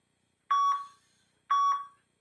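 Two short electronic beeps a second apart, each a clear tone that fades quickly: an interval timer's countdown beeps in a timed workout circuit.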